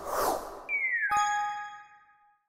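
Editing sound effects for a pop-up message graphic: a short rush of noise, then a brief falling tone and a bright notification-style ding of several ringing tones about a second in, fading out near the end.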